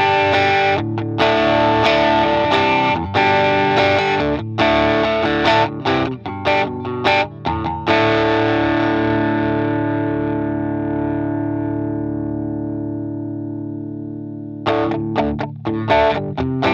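Electric guitar played through a Caline CP-43 Pegasus Klon-style overdrive, giving a mildly driven tone. Picked chords and notes for the first half, then one chord left to ring and slowly fade, with playing starting again near the end.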